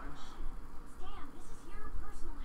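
Glossy trading cards being handled and slid over one another, giving short papery swishes, under low, indistinct speech.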